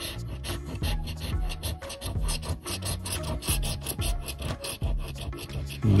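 A scratching stick's metal disc scraping the latex coating off a scratch-off lottery ticket in quick, repeated rasping strokes, several a second.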